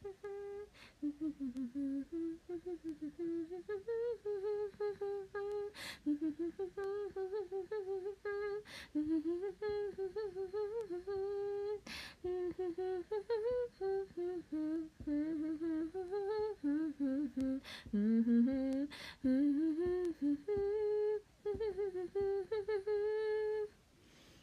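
A young woman humming a tune softly to herself, one unbroken melodic line, with a few sharp clicks along the way.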